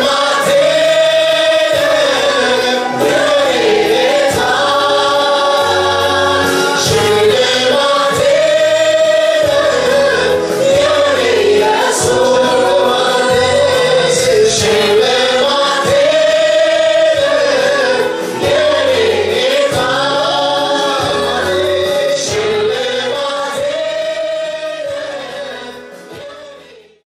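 Gospel worship song: a choir of female voices with a male lead singer, over instrumental accompaniment, singing a slow repeating phrase. The music fades out near the end.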